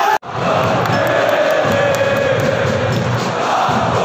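A large crowd of football supporters singing a chant together in long held notes. The sound cuts out for an instant just after the start, then the singing carries on.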